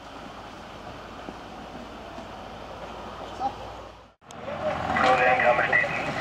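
A fire engine's engine runs with a steady low hum. About four seconds in, a cut brings a louder mix of several people's voices over the running engine.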